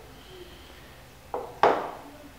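A mustard jar set down on a stone countertop: two short knocks about a second and a half in, the second louder, over quiet room tone.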